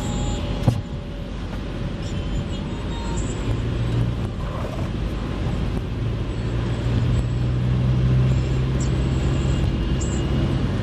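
Car driving on a wet road, heard from inside the car: steady engine and tyre noise. A sharp click comes a little under a second in, and the engine's low hum grows stronger from about three and a half seconds in.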